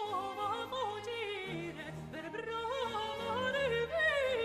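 A male sopranist singing an Italian Baroque opera aria in a high voice with vibrato and ornamented turns, accompanied by a period string orchestra with sustained bass notes underneath.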